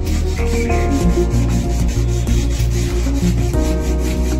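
Sandpaper rubbing over teak wood in quick repeated hand strokes, over background music with sustained notes.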